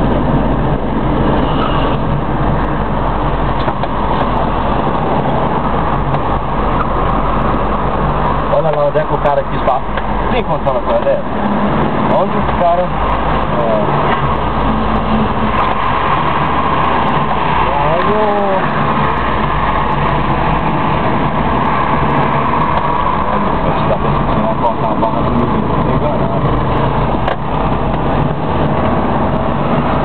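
A car's engine and road noise heard from inside the cabin while driving, a steady low hum, with a few brief snatches of voices.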